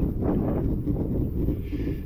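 Steady low wind noise on the microphone of a camera mounted on a moving road bike.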